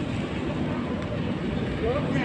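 A metro escalator running on a long descent, a steady low mechanical rumble, with indistinct voices over it near the end.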